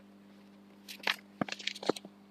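Sheets of paper being handled, giving a few short crackling rustles in the second half, over a faint steady hum.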